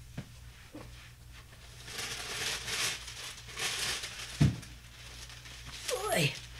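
Quiet off-camera rustling and handling noises of someone fetching craft supplies, with one soft thump about four and a half seconds in.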